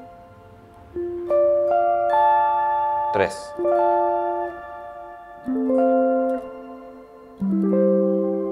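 Electric guitar with a clean tone playing chord inversions as arpeggios: four chords, each picked one note at a time with the notes left ringing together. About three seconds in there is a short squeak of a fretting hand sliding on the strings as it shifts position.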